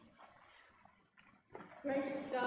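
Faint sanctuary room noise with a few soft clicks and rustles, then a woman's voice at the pulpit microphone starting just before the end.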